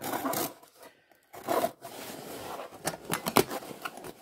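Utility knife slitting the packing tape on a cardboard shipping box in short scratchy strokes, then the cardboard flaps pried and pulled open, with a few sharp clicks about three seconds in.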